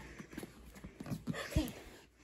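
Light, irregular thumps and scuffs of a child's hands and feet on foam gym mats as she gets up from a crab walk, with one heavier thump about one and a half seconds in.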